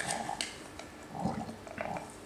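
Ground coffee poured into the hot water in the upper glass bowl of a Cona vacuum coffee maker. There are a few short, low sounds and a sharp click about half a second in.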